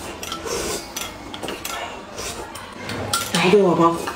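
Metal spoons clicking and scraping against glass cups, with scattered small clinks and eating sounds as two people spoon up soup.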